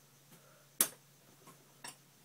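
Scissors snipping through hair in a quiet room: two short, sharp snips, the louder about a second in and the other near the end, with a few faint clicks between.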